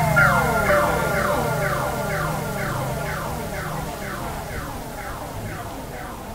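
Electronic falling-tone sweeps repeating about twice a second, each one echoing and dying away while the whole train grows steadily fainter, like a synth effect fading out through an echo.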